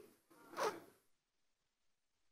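Near silence in a pause, broken about half a second in by one brief, soft sound that falls in pitch.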